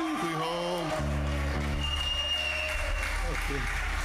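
Audience applauding, with a man's voice rising and falling briefly at the start.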